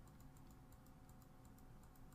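Near silence: room tone with a faint, quick run of clicks from a computer keyboard.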